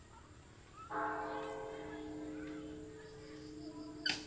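Bronze Buddhist temple bell struck once about a second in, ringing on in several steady tones and slowly fading away.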